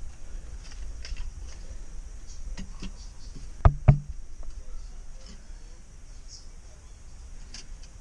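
Two sharp knocks close together a little under four seconds in: a spirit level being set down on a wooden board laid across the rim of a plastic water tank. Insects chirr steadily and faintly in the background.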